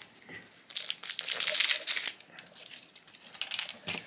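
Plastic toy can being handled and opened as a stuffed plush is pulled out of it: a rapid run of clicking and crinkling for about two seconds, then fainter rustling.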